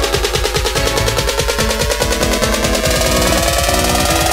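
Melodic dubstep build-up: a fast, rapid drum roll over steady synth chords, with a synth tone rising slowly in pitch in the second half, leading into the drop.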